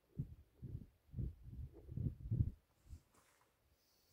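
Oil glugging out of a jug as it is poured into a tractor's starting-engine clutch housing: a string of about six low, short gulps, roughly two a second, dying away near the end.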